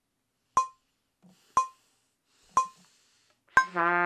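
Metronome clicking steadily once a second, four clicks, during a rest in the trumpet playing, with a faint breath being drawn in between. Near the end a trumpet comes in on a sustained low note.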